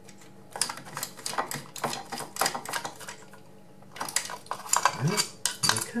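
Quick small clicks and rattles of a screwdriver undoing the screws of a wall light switch and the plastic switch plate being handled, in two spells of clicking with a pause between.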